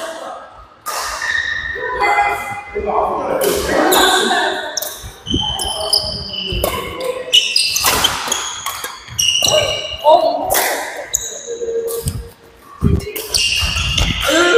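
Badminton rally in a sports hall: repeated sharp cracks of rackets striking the shuttlecock, mixed with footwork on the court floor, echoing in the hall. Voices are heard alongside.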